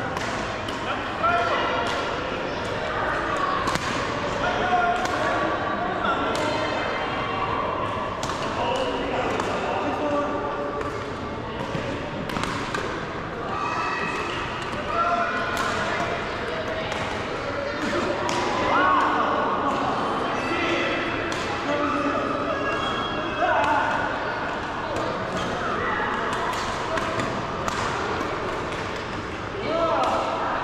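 Badminton rackets hitting a shuttlecock again and again in a sports hall, sharp hits every second or so, with people talking over them.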